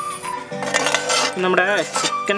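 A metal spoon clinking and scraping against a ceramic bowl as it scoops fried chicken pieces, over background music.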